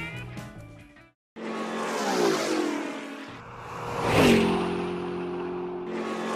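Car drive-by sound effect: an engine-like tone swells and falls in pitch as a car passes, twice, the second pass louder.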